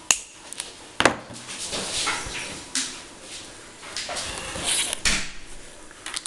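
Small side cutters snipping a thin plastic strip: two sharp clicks about a second apart, followed by irregular rustling and scraping as the pieces are handled.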